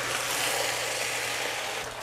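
Steady sizzle of chow mein frying in a hot wok as rice wine is stirred through, easing slightly near the end.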